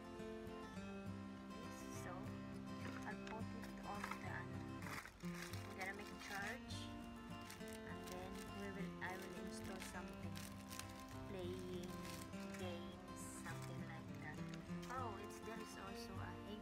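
Background music: acoustic guitar with a voice over it.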